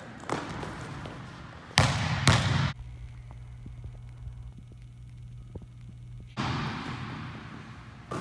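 Basketball workout in an echoing gym: a ball thudding on the hardwood court, with two loud bangs about two seconds in. A quieter stretch with only a low steady hum follows before the court sounds return.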